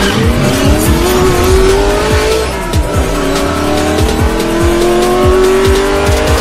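Car engine sound effect revving up in pitch. About two and a half seconds in it drops, as at a gear change, then climbs again, over an electronic music beat.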